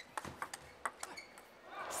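Table tennis rally: the plastic ball clicking off rackets and the table, about a dozen sharp hits a quarter to half a second apart. Crowd noise swells near the end.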